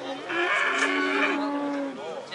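A cow mooing: one long moo of about a second and a half, starting just after the beginning.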